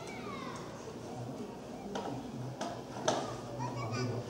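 Quiet room tone with faint, indistinct voices and a few sharp clicks, about a second apart, in the second half.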